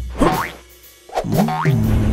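Cartoon transition sound effects over a short music sting: a sliding pitch sweep at the start, a quieter moment in the middle, then more sliding and held tones from about a second in.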